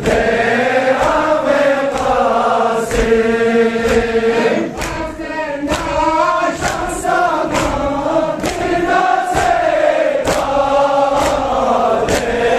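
A Balti noha chanted in unison by a crowd of men, a mournful sung lament, with rhythmic matam chest-beating: a slap on the chest about every three-quarters of a second keeping time with the chant.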